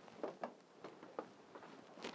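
Quiet handling noise: a few faint clicks and rubs as a camera is gripped and repositioned by hand.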